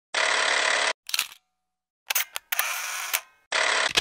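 Intro sound effects: three short bursts of hissing noise, each under a second long and cut off abruptly, with quick clicks in between and dead silence separating them.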